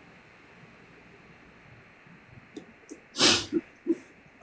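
A short, sharp burst of breath from a person about three seconds in, after a stretch of faint hiss.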